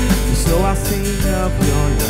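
Live worship band music: acoustic guitar, keyboards, piano and drums playing together, with a voice singing a slow melody over them.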